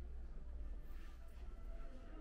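Quiet room tone in an empty room: a steady low rumble with a few faint, indistinct tones above it.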